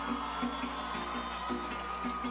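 Instrumental break in a Venezuelan song: a cuatro strummed in a steady rhythm with light percussion, under a thin held high tone, heard through a PA.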